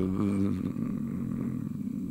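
A man's voice trailing off into a long, low, creaky hesitation sound, held for about a second and a half as he searches for his next word.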